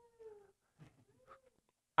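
Two faint, brief high-pitched voice-like calls, the second fainter and about a second after the first, from someone in a small audience.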